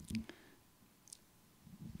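A pause in a man's speech filled by a few faint short clicks in the first half-second and one more about a second in, with quiet between them.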